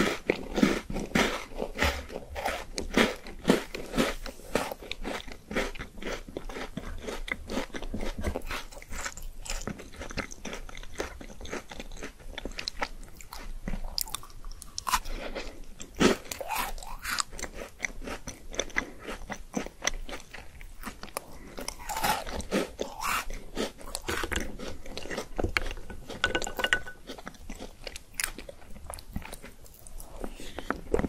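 Close-miked eating: a person bites into and chews crunchy chocolate balls, with rapid, irregular crunches and wet chewing clicks going on all the way through.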